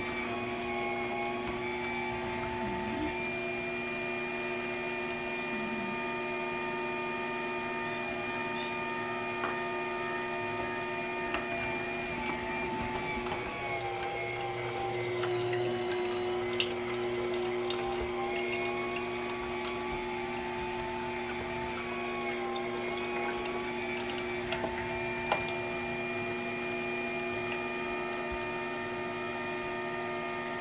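Omega Cold Press 365 slow masticating juicer running as lemons, carrots and apples are pushed through its auger: a steady motor hum, wavering slightly in pitch now and then, with a few faint clicks.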